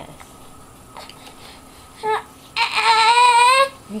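Baby fussing angrily: a short sound about two seconds in, then a loud, high, drawn-out cry of about a second near the end.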